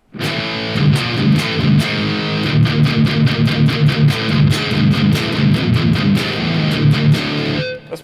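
Electric guitar played through a Korg ToneWorks AX30G multi-effects pedal into a Randall Satan amplifier, on a heavily distorted tone he calls "pretty badass". It plays a low riff of rapid picked notes that starts right away and stops just before the end.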